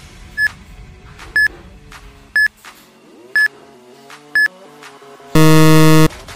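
Countdown-timer sound effect: five short high beeps about once a second over soft background music, then a loud buzzer near the end signalling time out.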